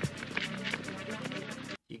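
Film soundtrack of several people running on pavement, quick footsteps over background music; it cuts off suddenly near the end.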